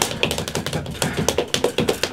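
A rapid, uneven run of sharp clicks and taps, roughly eight to ten a second, with some music underneath.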